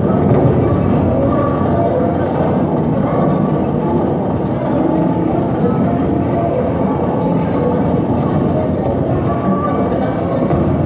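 Live industrial noise music from electronic equipment: a dense, steady wall of low, churning noise with short higher tones surfacing and fading every second or so.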